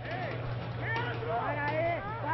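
Voices calling and shouting on and around the pitch during a break in play, with no commentary over them. A steady low hum runs underneath.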